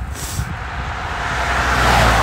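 A car passing close by on a narrow road, its tyre and engine noise swelling steadily to its loudest near the end.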